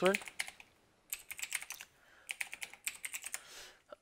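Keys tapped on a computer keyboard in three quick runs of keystrokes, separated by short pauses.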